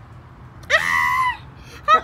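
A person's short, high-pitched squeal, rising in pitch at the start and dropping away at the end, about a second in, followed near the end by a laugh.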